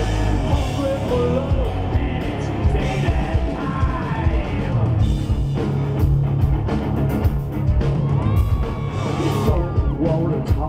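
Live rock band playing, with electric bass, guitars and drums under a male lead singer's sung and shouted vocals.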